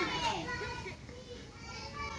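Children's voices talking softly and indistinctly, trailing off after about a second.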